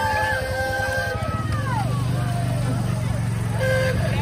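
Engine of a utility side-by-side running at low speed as it passes close by, a steady low hum that grows firmer about a second in. People's voices rise and fall over it.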